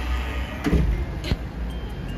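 Low, steady rumble of street traffic, with a couple of short knocks in the first half.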